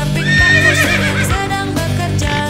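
A horse whinnies once, a wavering call that falls in pitch over about a second, on top of background music with a steady beat.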